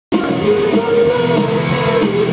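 Live rock band playing loud through a stage PA, with electric guitars and a drum kit and a voice singing over it.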